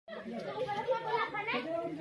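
Speech: people talking, with more than one voice.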